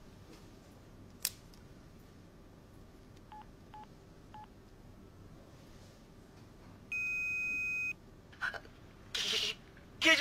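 Electronic beeps: three faint short beeps in quick succession, then one loud steady beep lasting about a second.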